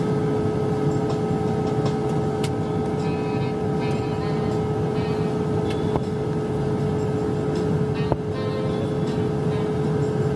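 Airliner cabin noise in flight: a steady rushing noise with a constant hum running under it.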